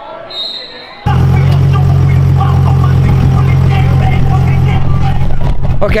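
A vehicle engine idling close by: a loud, steady low hum that starts suddenly about a second in.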